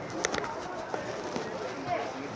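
Voices of players and spectators calling out across the ground, with a few sharp clicks.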